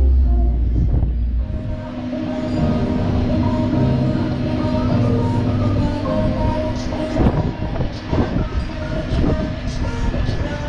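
Funfair ambience: a steady mechanical drone with several held tones, from the rides' machinery, with fairground music mixed in. A deep rumble sits under the first second or so, and a few short knocks come near the end.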